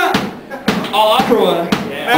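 Live hardcore band playing loud: distorted guitar, hard drum hits and shouted vocals, with a brief drop in level early on before the full band hits again.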